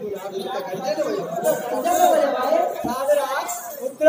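Voices talking over one another, a busy mix of speech and chatter.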